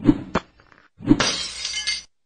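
Cartoon sound effects: a sharp hit and a click, then about a second in a thump followed by a crash of breaking, like shattering glass, that lasts most of a second.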